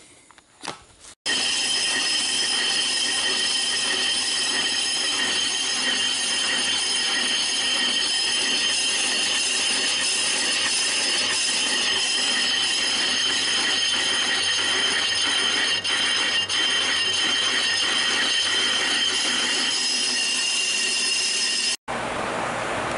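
Brake drum lathe turning a rusted, pitted brake drum, the cutting bit skimming the friction surface with a steady high-pitched ringing squeal over the machine's running noise. It starts abruptly about a second in and stops just before the end.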